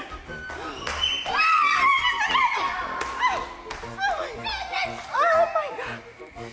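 A voice shouting "run!" followed by further excited voices rising and falling in pitch, over background music.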